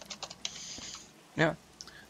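Several quick clicks of computer keyboard keys near the start, followed by a short spoken word.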